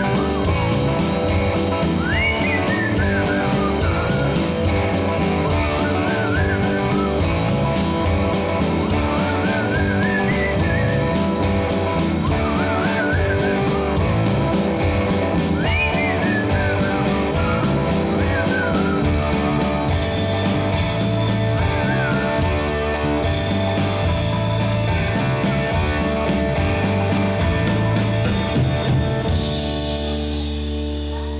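Live rock band playing an instrumental passage: electric guitar, bass guitar and drum kit, with a lead line of bending notes that comes back every few seconds. Cymbals grow brighter in the second half, and the music starts to die away at the very end.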